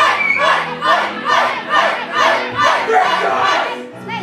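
A group of young voices chanting or shouting in an even rhythm, about two to three shouts a second, over sustained electric keyboard chords, stopping near the end.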